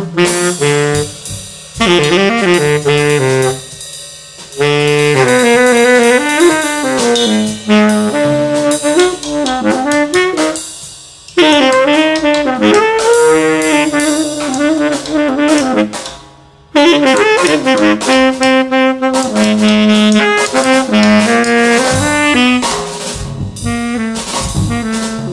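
A Selmer Mark VI tenor saxophone playing improvised jazz lines in phrases broken by short pauses, over a Gretsch drum kit with Paiste Formula 602 cymbals.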